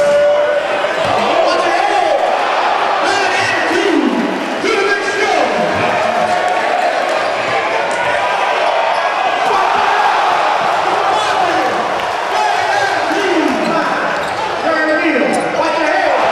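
A basketball being dribbled on a hardwood gym floor, with indistinct voices of players and a crowd echoing in a large hall.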